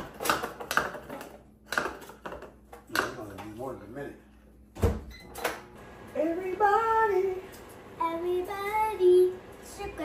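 A child's voice, drawn-out and gliding in pitch, in the second half. Before it come a few sharp knocks and clicks, the loudest about five seconds in.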